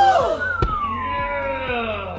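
A climber landing on the padded bouldering crash mat with a thud at the start and another about half a second in, under a long drawn-out 'ohhh' of voices falling slowly in pitch.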